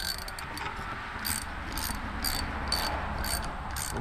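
Hand socket ratchet clicking in short bursts about twice a second as its handle is swung back and forth on a cam gear bolt.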